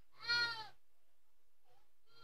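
A single short sheep's bleat, about half a second long, just after the start.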